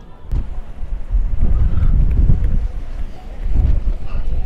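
Wind buffeting the microphone: a loud, gusting low rumble that swells about a second in and again near the end, with a light knock near the start.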